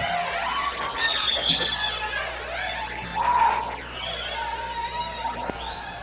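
Live country band music with wavering, sliding high notes.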